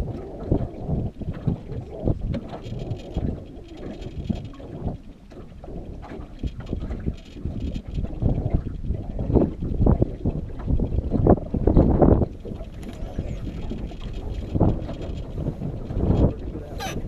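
Wind buffeting the microphone in irregular gusts, over choppy water lapping against the side of a small open boat.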